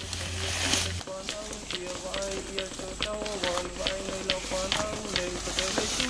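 A song, a sung melody of held notes stepping up and down over a steady beat of about three to four ticks a second, starting about a second in after a brief burst of noise.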